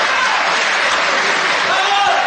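Audience applauding steadily, with voices calling out over the clapping.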